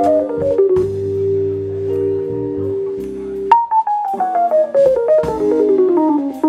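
Jazz band playing live: a Technics P30 stage piano runs down in quick steps over electric bass and drum kit, holds a chord, then after a sharp hit about three and a half seconds in runs down again, with cymbal strokes throughout.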